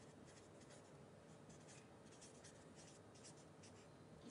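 Faint, irregular scratching of writing on a board, against near silence.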